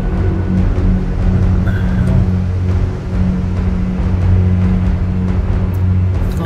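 Low, steady droning background music with an ominous feel.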